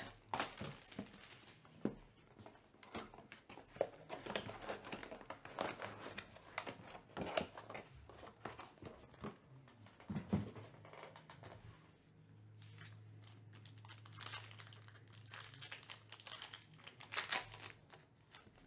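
Foil trading-card pack wrappers crinkling and tearing as a hobby box is opened and a pack is ripped open, with irregular crackling handling noise and a louder burst of tearing near the end.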